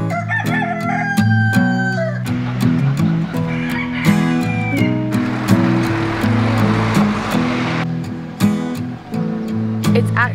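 Background acoustic guitar music, with a rooster crowing once for about two seconds, starting about half a second in. From about two to eight seconds in there is also a steady rushing noise.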